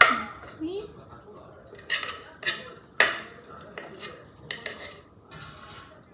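Chopsticks clinking and scraping against a frying pan while food is picked out of it: a series of sharp clinks, the loudest right at the start and about three seconds in.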